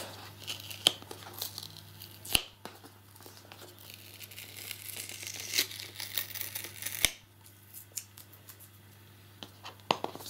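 A stuck security-seal sticker being picked, peeled and scraped off a cardboard box by fingernails: scratchy peeling and tearing noise, denser in the middle, with a few sharp clicks.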